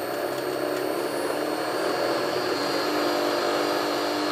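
Column drill press motor running on a frequency inverter while its speed is turned steadily up toward maximum. A steady machine hum and whine that grows slightly louder.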